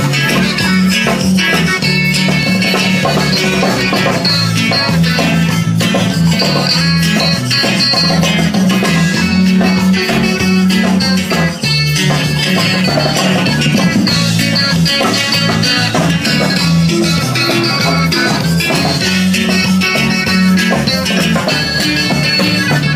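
Live band music with a guitar lead over a steady bass line, playing without a break.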